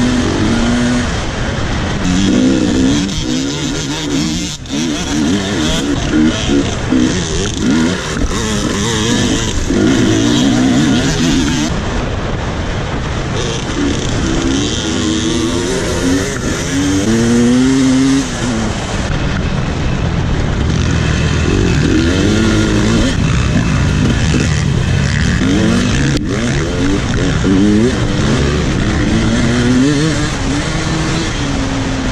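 KTM dirt bike engine under hard throttle, its pitch climbing and dropping again and again as it revs up and shifts, over a steady rush of wind noise.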